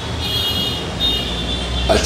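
A road vehicle passing: a low rumble that grows stronger in the second half, with a faint steady high-pitched whine over it.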